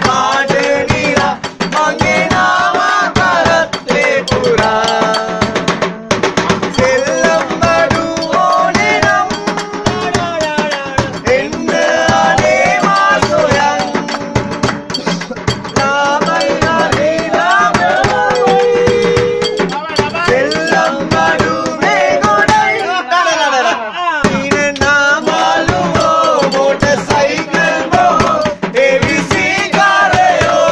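Live Sri Lankan baila music: a hand drum struck with both hands in a quick, steady beat, with voices singing a wavering melody over it. The music thins for a moment about three quarters of the way through, then picks up again.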